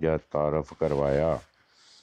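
A man's voice speaking for about a second and a half, then a short pause with faint hiss near the end.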